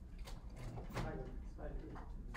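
A man's voice saying "thank you", preceded by a couple of short sliding or knocking handling noises.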